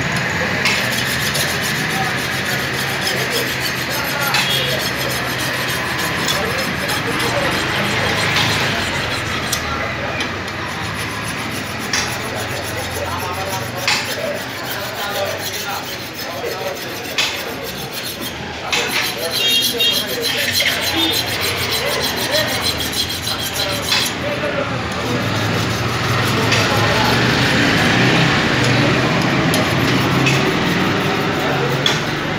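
Hand file rasping back and forth along the edge of a curved steel sickle blade to sharpen it, with occasional sharp clicks. A faint steady low hum runs underneath.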